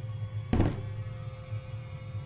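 A glass terrarium is set down on a table with a single thunk about half a second in. It plays over dark background music with a steady low drone.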